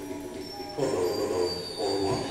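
Train wheels squealing on rails over a low rumble: a thin, high, steady squeal, with the rumble growing louder about a second in.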